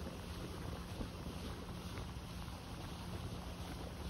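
Motorboat under way at sea: a steady low engine hum under wind buffeting the microphone.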